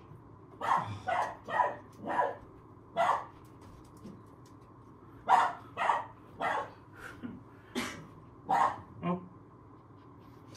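Poodle puppy barking: about eleven short barks, five in quick succession in the first three seconds, then after a short pause about six more.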